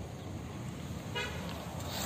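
A single short vehicle horn toot about a second in, heard faintly over a low steady background rumble.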